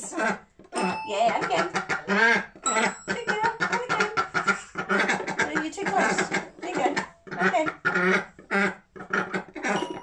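Continuous talking, with a few short chiming notes from a small toy piano whose keys a Khaki Campbell duck is pecking.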